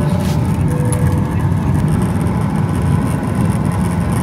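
Steady low rumble and hiss of an airliner's cabin, with the jet engines and cabin air running.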